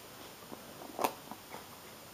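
Scissors cutting the plastic shrink-wrap on a box: a few faint light ticks and one sharper snip about a second in.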